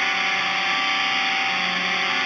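Electric guitar through heavy distortion, a held chord sustaining as a steady, dense buzz.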